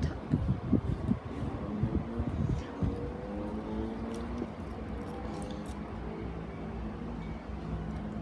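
Small plastic Tsum Tsum figures being stacked and set down on a cloth-covered surface by hand, with soft knocks and faint metallic clinks from a keyring through the first few seconds. After that the handling stops and a quieter background with a faint hum remains.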